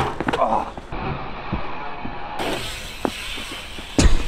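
Dirt jump bike tyres rolling on a packed-dirt jump, with a few sharp knocks from the bikes landing and rattling.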